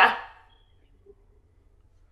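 A woman's last spoken words trailing off in the first moment, then near silence with only a faint low hum.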